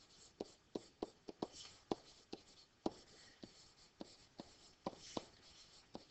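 A stylus writing on a digital pen surface: faint, irregular taps and clicks of the pen tip, roughly two a second, as words are handwritten.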